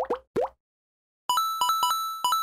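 Two short, rising 'bloop' pop sound effects of a cartoon, in quick succession. After a short gap, a bright, bell-like synth jingle of quick repeated notes begins about a second and a quarter in.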